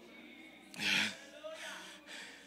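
A man's short, sharp breath into a close microphone about a second in, with faint room sound around it.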